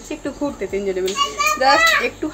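Speech only: talking in a small room, with a child's high-pitched voice in the second half.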